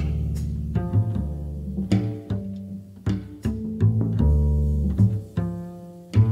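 Upright double bass played pizzicato in a jazz ballad, low plucked notes ringing and fading one after another, with light cymbal and drum strokes.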